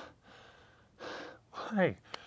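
A man's short breathy exhale about a second in, then a falling-pitched spoken "Hey" near the end.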